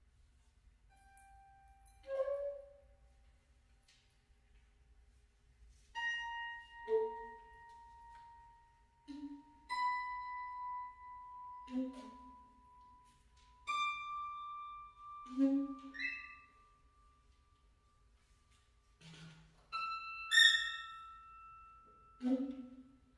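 Sparse, quiet improvised music from a piano-led trio: short low notes that die away quickly, set against long held high tones that come back four times, each a step higher in pitch than the last.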